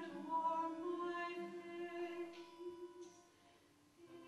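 A slow song: a woman's voice holding long, steady notes that die away about three seconds in, leaving a short quiet pause.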